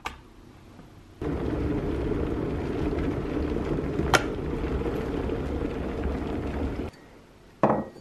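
Electric kettle switched on with a click, then its water heating with a steady rumble for about six seconds, with one sharp click midway. Near the end a ceramic mug is set down on a stone counter with a short knock.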